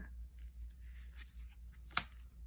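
Trading cards handled in gloved hands: faint rubbing and sliding of cards against one another, with one sharp click near the end.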